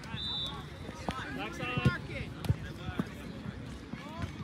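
Soccer ball being kicked and dribbled on grass, with a couple of sharp thumps about two and two and a half seconds in, amid scattered faint shouts from players and the sideline. A brief high whistle-like tone sounds right at the start.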